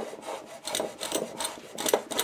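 Stanley 220A block plane shaving walnut bowtie inlays down flush with the wood surface: a run of short strokes of the blade cutting across the wood.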